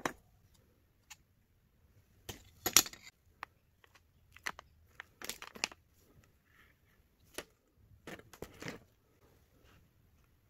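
Metal brackets, a plastic cable drag chain and a metal power-supply box from a laser engraver kit being handled and set down on a wooden tabletop. Scattered clicks, knocks and short rattles come at irregular moments; the loudest cluster is a little under three seconds in.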